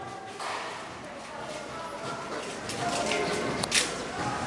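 Faint background voices with small clinks and clatter of hand dishwashing, and one sharp knock near the end.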